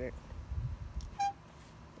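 Low rumbling noise, then one short high-pitched squeak a little after a second in.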